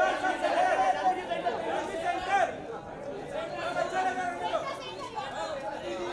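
Overlapping chatter of many voices talking and calling at once, a crowd of press photographers at a celebrity photo call, louder in the first couple of seconds.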